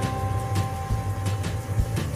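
Hot oil sizzling with fine crackles around flour-coated eggplant frying in a pan, over a steady low hum.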